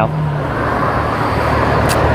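Steady road traffic noise with a low engine hum, with one brief click near the end.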